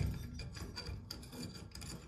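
Fingers working the thumbscrews on a chrome light fixture's globe holder, metal scraping and ticking against the rim of a frosted glass globe: a run of small, irregular scrapes and clicks.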